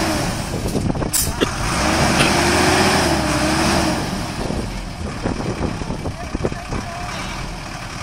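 A stuck minibus's engine revving under load as it tries to pull its wheels out of soft, wet grass; the revs climb about a second and a half in and ease off after about four seconds, with a couple of knocks near the start.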